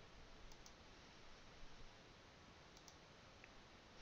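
Near silence, with a few faint computer mouse clicks scattered through it.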